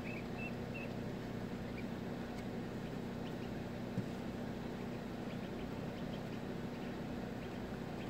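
Steady low electrical hum, typical of an egg incubator's fan or heater. A few faint high peeps from newly hatching ducklings come in the first second, and there is a single soft tap about four seconds in.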